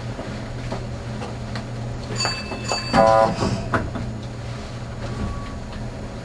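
Meitetsu Panorama Car standing at a station with a steady low hum. About two seconds in comes a brief high whistle-like tone, and just after it a short, loud pitched signal blast, typical of a train's departure signals.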